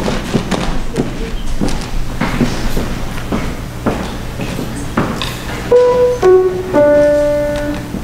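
Footsteps and shuffling on a stage floor, then a piano sounds three starting pitches about six seconds in, one after another, each lower than the last. The last note is held and fades out, giving the a cappella trio its notes.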